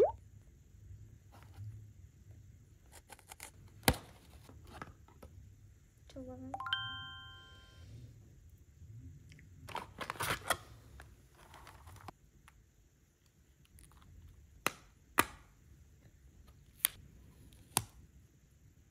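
A cardboard cosmetics box and a plastic cushion compact being handled: soft rustling with scattered sharp clicks, several of them close together in the last few seconds as the compact is handled and opened. A short chime sounds about six to eight seconds in.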